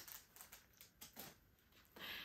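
Faint crinkling and rustling of small packaging being handled, with a few soft ticks.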